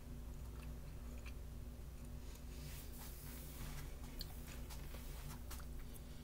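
A person chewing a mouthful of cheeseburger macaroni, with faint small clicks, over a low steady hum.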